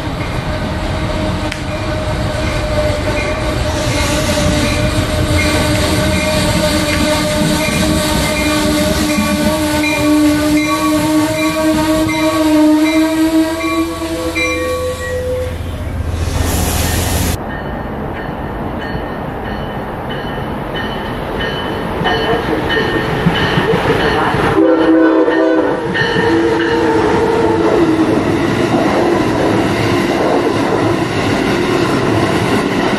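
A passenger train pulling into the station, with a steady pitched drone and its overtones sinking slowly in pitch for the first 15 seconds or so. After an abrupt change, a train runs close by, with a short pitched sound about 25 seconds in.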